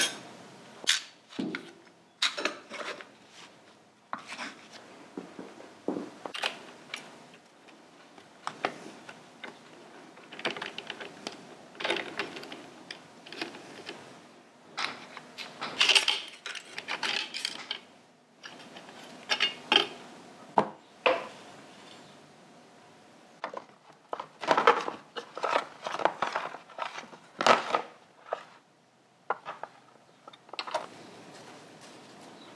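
Steel and friction clutch plates from a Harley Sportster's clutch clinking and clicking against each other and the clutch hub as they are pried off and handled: a long series of irregular light metallic knocks, busiest about halfway through and again near the end.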